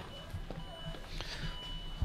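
Car's electronic warning chime beeping in a steady, even-pitched series of pulses about half a second long, the reminder sounded with the key left in the ignition and the driver's door open. A couple of faint clicks sound in between.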